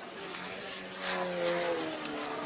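Engine and propeller of a 41% scale Extra 330SC model aerobatic plane, a 200 cc four-cylinder, droning steadily in flight and growing a little louder about a second in.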